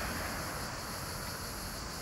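Outdoor ambience: a steady high-pitched insect chirring over a low, even rumble.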